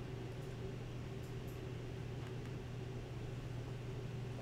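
Steady low electrical hum with a faint higher tone over it, the background noise of the recording, with a few faint clicks.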